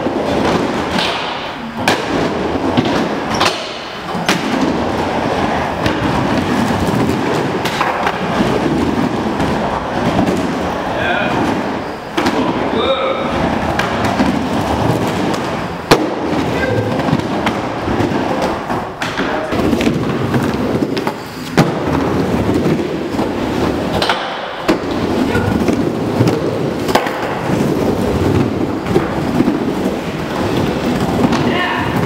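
Skateboard wheels rolling on a wooden bowl, a continuous rumble that swells and fades as the skater carves up and down the walls. Several sharp clacks of the board hitting the deck or coping cut through it, the loudest about halfway through.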